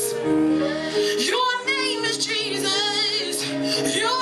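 A woman singing a gospel song with electronic keyboard accompaniment. A held keyboard chord sounds alone at first, and her voice comes in about a second in with long, wavering notes over the sustained chords.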